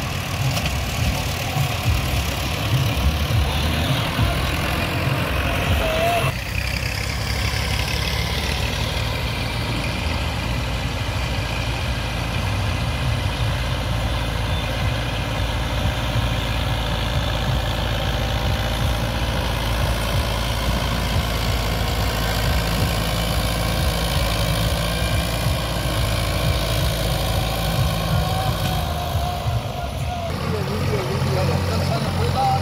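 Diesel farm tractor engines running steadily under load as they drag levelling blades through loose soil, a continuous low rumble. The sound changes abruptly about six seconds in.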